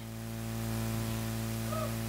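Steady electrical mains hum and hiss from the sound system, swelling gradually in level as the gain comes up. A faint short gliding sound comes near the end.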